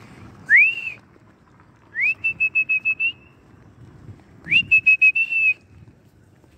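A person whistling three times. Each whistle is a rising note up to a high pitch. The second and third run on into a quick string of short repeated notes at that same pitch, about a second long.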